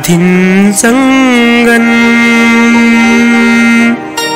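A Telugu verse sung in the padya-ganam recitation style: a short gliding phrase, then one long, steady held note of about three seconds that breaks off sharply at the end of the line.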